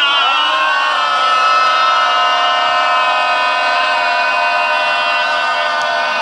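Several men's voices together holding one long, loud, drawn-out shout at a steady pitch.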